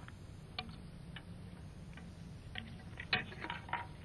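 Low steady hum with a few faint, scattered clicks, then a quick cluster of louder clicks about three seconds in.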